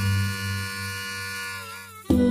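Harmonica holding a chord over a low bass note, slowly fading, with a slight bend in pitch near the end.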